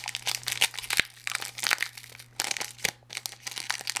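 Crinkling of a baseball card pack's wrapper together with the rustle of a stack of trading cards being handled, as a run of irregular crackles.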